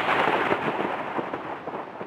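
A loud, crackling crash of noise like a thunderclap sound effect, fading steadily throughout.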